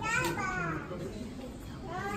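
Newborn baby crying: one falling wail at the start and another beginning near the end.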